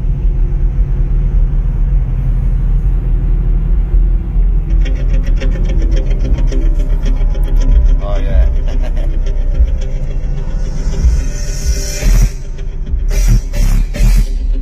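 Bass-heavy music played loud through two EMF Banhammer 12-inch subwoofers, heard inside the car cabin, with deep low bass throughout and a fast ticking beat joining about five seconds in.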